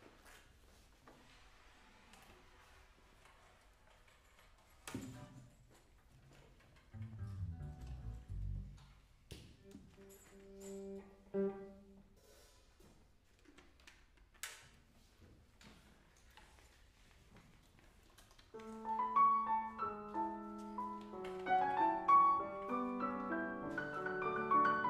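Quiet stage sounds with a few knocks and soft low notes, then about eighteen seconds in a piano starts playing a chordal introduction.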